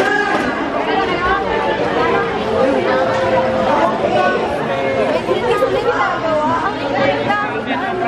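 Crowd chatter: many voices talking over one another in a busy indoor hall.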